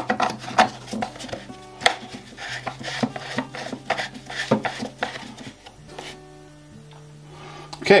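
A run of clicks and knocks as a plastic screw cap is twisted back onto a caustic soda bottle and the bottle is handled on a kitchen worktop. The handling stops about five and a half seconds in. Soft background music with held low notes plays underneath.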